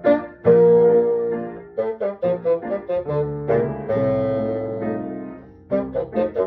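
Bassoon playing a melody with piano accompaniment: a run of short detached notes, then longer held notes that fade away before short notes start again near the end.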